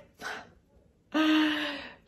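A woman out of breath after an interval: a short breath, then a long sighing breath out with a little voice in it, fading away.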